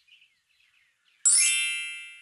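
A bright, high chime sound effect, struck once just over a second in, ringing with several clear tones and fading away over about a second.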